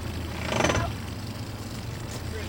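Towboat's inboard engine idling with a low steady hum, and one short loud rough burst of sound about half a second in.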